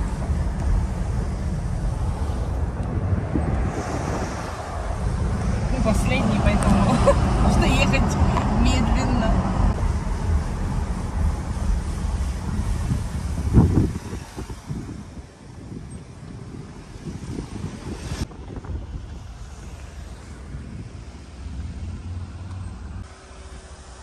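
Car road and engine rumble heard from inside the cabin while driving through a road tunnel. About fourteen seconds in it drops sharply to a much quieter low rumble.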